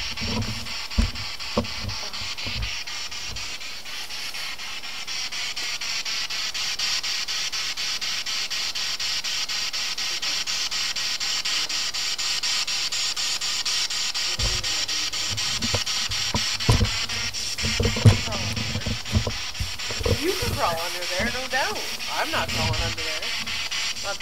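Steady high hiss with faint wavering tones through the middle. From about halfway there are scattered low thumps and knocks, and low murmured voices come in near the end.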